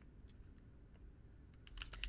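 A few faint computer keyboard keystrokes, scattered at first, with a quick little run of them near the end.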